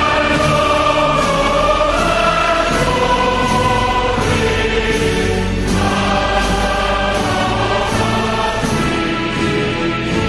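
Background choral music: a choir singing sustained notes that move slowly from one chord to the next.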